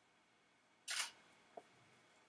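Canon EOS 6D Mark II DSLR taking one shot at 1/30 s, a single sharp shutter clack about a second in, followed by a faint click about half a second later.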